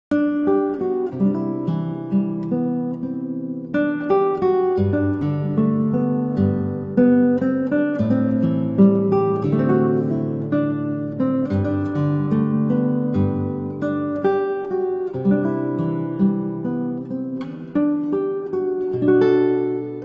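Instrumental acoustic guitar music: plucked notes and chords ringing on without a break.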